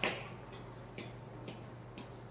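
Regular ticking, about two ticks a second, over a steady low hum, with a short louder sound right at the start.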